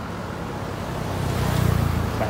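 A passing motor vehicle: a low engine and road rumble that builds and is loudest about a second and a half in.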